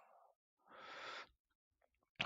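Near silence: room tone, with one faint half-second hiss about a second in.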